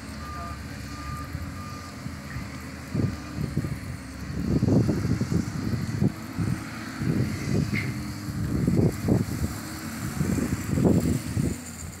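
A vehicle's reversing alarm beeps a few times in the first two seconds. From about three seconds in, wind buffets the phone microphone in irregular gusts while cycling along a road.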